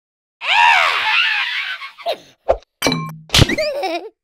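Cartoon sound effects: a loud wailing cry that swoops up and down for about a second and a half, then a series of thuds as a glass bottle topples, with one loud whack about three and a half seconds in, followed by short squeaky vocal sounds.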